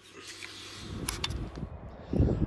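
Wind rumbling on the microphone, low and fairly quiet, with a couple of short handling clicks about a second in; before that, a faint steady hum.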